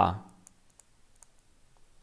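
A few faint, scattered clicks of a stylus tapping a digital writing tablet while a word is handwritten.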